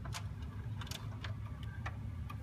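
Samsung VHS VCR taking in a just-inserted cassette: a low, steady motor hum with scattered light clicks and ticks as the transport threads the tape and starts to play.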